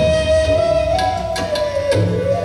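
Bansuri bamboo flute holding one long note that bends slightly up about a second in and back down near the end, over tabla and pakhawaj with a few drum strokes.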